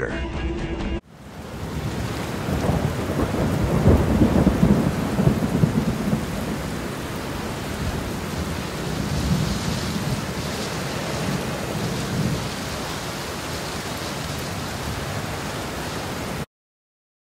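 Thunderstorm ambience: a steady rush of rain with low rolling rumbles of thunder, starting abruptly about a second in and heaviest a few seconds later.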